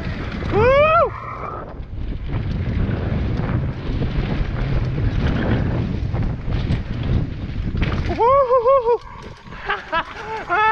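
Mountain bike rolling fast down a dirt singletrack, a steady low rumble of tyres and wind on the microphone. Over it a rider whoops: a quick rising yell about a second in and a bouncing "woo-hoo-hoo" near the end.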